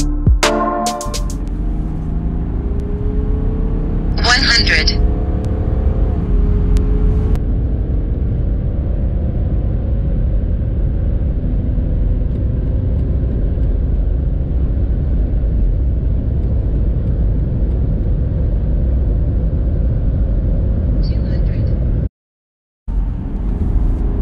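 BMW 730d's 3.0-litre straight-six turbodiesel at full throttle from about 100 toward 200 km/h, heard from inside the car. The engine note climbs in pitch and drops at an upshift of the eight-speed automatic about six seconds in, over a steady road and tyre rumble. Short electronic timer beeps sound at the start of the run, a few seconds in, and again near its end, before the sound cuts out abruptly.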